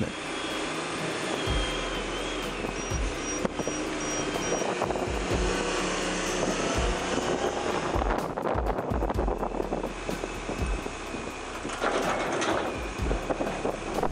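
Svetruck log loader's diesel engine running steadily while the machine lifts and swings a load of logs, with background music over it.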